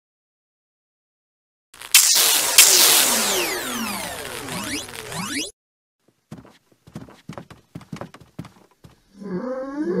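Added sci-fi sound effects. About two seconds in, a loud crash sets off a cascade of falling pitch sweeps that dies out after a few seconds. Then comes a quick run of light taps, like a cartoon creature's footsteps, and near the end a short creature voice sliding up and down in pitch.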